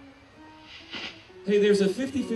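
A short lull with a faint hiss, then a man's voice through the stage PA starting about one and a half seconds in.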